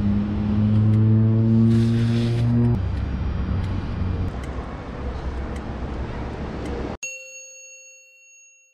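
A steady low hum that stops about three seconds in, over a noisy outdoor background. About seven seconds in the background cuts out, and a single bright chime sound effect rings and fades away.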